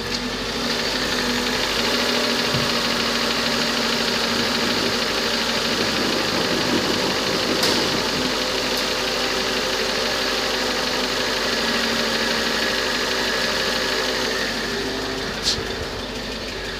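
Mercedes-Benz CLS500's 5.0-litre V8 engine running, idling steadily.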